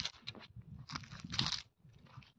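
Footsteps crunching on dry leaf litter, two clearer steps about a second in and half a second apart.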